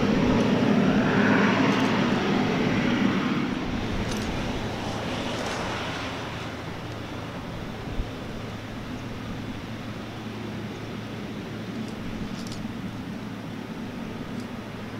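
Boeing 777-300ER's GE90-115B jet engines running at taxi power as the airliner rolls past, a steady rush with a low hum that fades over the first six seconds or so. A single short knock comes about eight seconds in.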